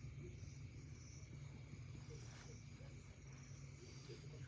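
Near silence: room tone with a faint steady low hum and a faint high-pitched whine.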